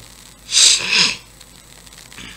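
A man sneezing once, about half a second in: a short, sharp, hissing burst.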